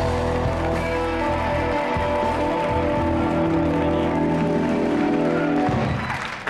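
Instrumental band music with held chords, stopping shortly before the end.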